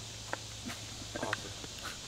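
A few soft footsteps and scuffs on dry dirt over a low steady hum, with a brief murmur of voice about a second in.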